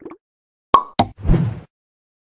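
Animated end-card sound effects: a sharp pop with a brief ringing tone, a second click a quarter second later, then a short noisy burst.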